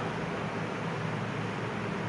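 Steady background hum with an even hiss. No distinct events and no speech.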